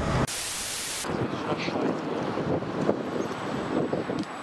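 A burst of even hiss lasting just under a second near the start, then outdoor ambience with wind buffeting the microphone.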